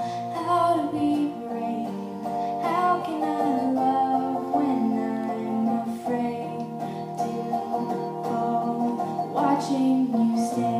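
A woman singing solo with her own guitar accompaniment, playing live: held, slowly moving vocal notes over steadily strummed chords.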